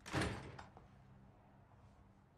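A door closing: one short, noisy sound at the start that dies away within about half a second.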